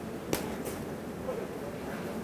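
Two sharp slaps about a third of a second apart, from boxing gloves landing in a close-range exchange, over a background murmur of voices in the hall.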